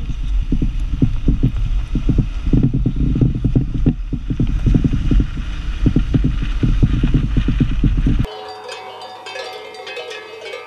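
Land Rover Defender driving over a rough dirt track: a loud, steady rumble with wind buffeting and many irregular knocks and bangs as the body and suspension take the bumps. About eight seconds in it cuts to quieter ringing of livestock bells from grazing animals.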